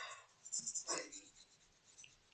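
A pause in speech with a few faint, short noises close to the microphone, about half a second to a second in.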